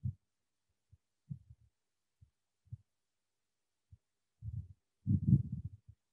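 A muffled voice in short, scattered fragments with pauses between them, growing louder and longer near the end.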